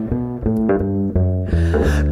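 Live jazz band playing between sung phrases, the upright double bass in front with a run of plucked notes over the band.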